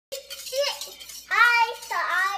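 A toddler's high-pitched excited vocalizing without clear words: a short call near the start, then a louder shout in the second half.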